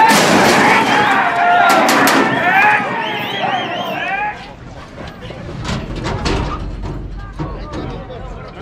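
Several men shouting loudly together around a horse-racing starting gate, with high warbling whistles, beginning with a sharp bang. After about four seconds the shouting stops and only scattered knocks and a low rumble remain.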